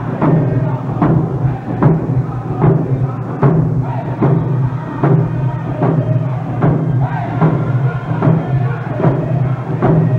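Round dance song: hand drums struck together in a steady beat, a little more than one stroke a second, with voices singing over them.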